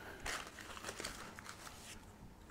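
Faint rustling with a few soft clicks from satin ribbon and the bouquet being handled.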